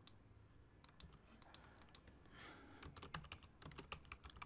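Faint computer keyboard typing: scattered keystrokes that come faster and closer together in the last second or so.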